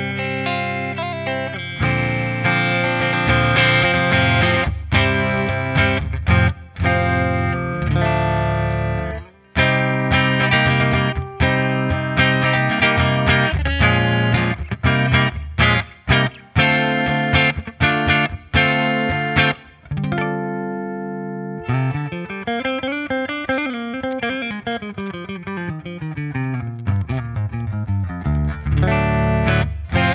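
Sterling by Music Man MAJ200 electric guitar played through a clean tone, with picked single notes and chords and a full sound. Over several seconds in the second half, the notes swoop up in pitch and back down.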